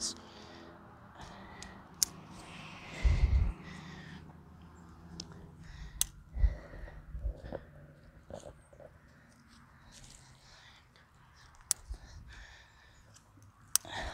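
Faint rustling with a few sharp clicks as the plastic clips of an ultralight backpacking tent are hooked onto its poles, heard from a distance, with a brief low thud about three seconds in.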